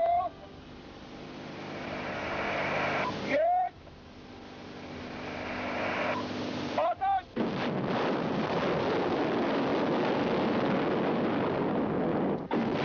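Ballistic missile rocket motors at launch: a rising rocket noise swells and cuts off abruptly twice, each cut marked by a short rising whine. From about seven and a half seconds in the rocket noise runs steady and loud.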